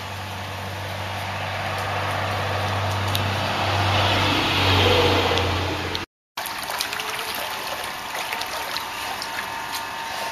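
Low engine hum of a passing motor vehicle, swelling to its loudest about four to five seconds in and fading. After a short break, gentle water slapping and small splashes as a dog swims in the pool.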